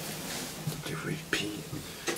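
A voice speaking softly, close to a whisper, in a few short bursts inside a small elevator car, over a low steady background noise.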